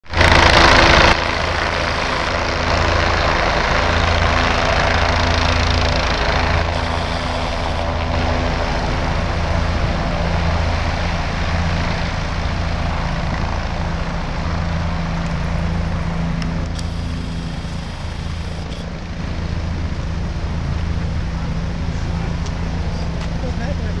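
A medical helicopter landing close by: steady rotor and engine noise with a pulsing low rotor beat, easing a little near the end. A loud rush of noise fills the first second.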